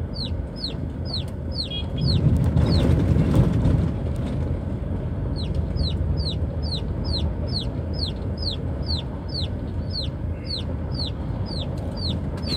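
Chicks peeping inside a moving car: a steady run of short, falling peeps, about three a second, pausing briefly a few seconds in. Under them the car's engine and tyres rumble over a rough, unpaved road, louder for a couple of seconds early on.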